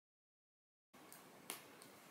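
Dead silence for about the first second, then faint room tone with one sharp click about halfway through.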